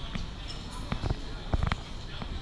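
Street background with passers-by talking indistinctly and a few dull knocks, the loudest a quick cluster about one and a half seconds in.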